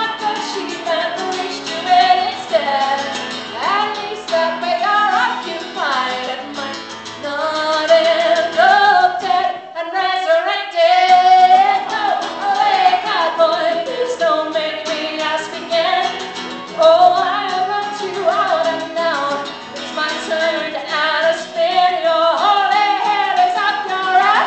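A woman singing a folk song to her own acoustic guitar strumming, with a girl singing backup alongside.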